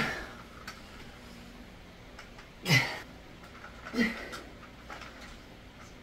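Short forceful exhalations of a man straining through dumbbell curls, three breaths spaced irregularly: one at the start, one near the middle and one about a second later.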